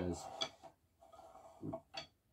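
A few quiet knocks and a sharp click from drumsticks tapping on the rubber pads of an electronic drum kit, which makes little acoustic sound of its own.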